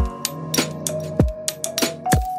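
Background music with a beat: deep kick drums that drop in pitch, sharp high percussion, and held melodic notes over them.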